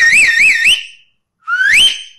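A man whistling loudly through cupped hands. The first note rises and then wavers up and down three times; a second, shorter whistle sweeps upward about a second and a half in.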